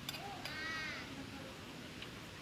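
A single short animal call about half a second long, rising then falling in pitch, just after a light click at the start.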